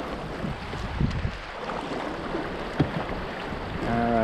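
River current rushing and lapping against a moving canoe's hull, with a few brief paddle strokes splashing in the water.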